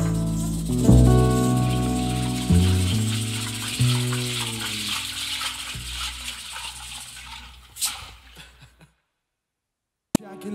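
Closing chords on acoustic guitar and upright bass, struck a few times in the first four seconds and left ringing and fading, with a shaker rattling over them and dying away. A last short stroke near 8 s, then the sound cuts to dead silence for the final second.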